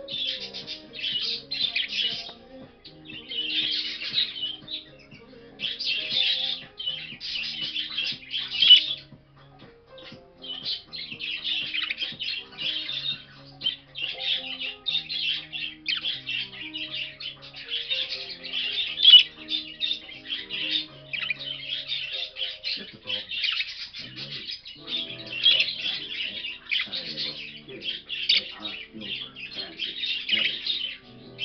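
A spangle budgerigar cock warbling: a near-continuous, busy chattering song with squeaks, broken by two sharper loud calls, one about a third of the way in and one near the middle. Soft background music with held notes plays underneath.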